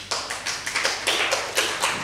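A short, ragged burst of sharp hand strikes from councillors, several a second and unevenly spaced, like scattered clapping or palms on desks, a show of approval.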